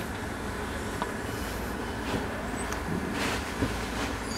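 Steady low rumble and hiss of room background noise, with a few faint clicks and a slight swell about three seconds in.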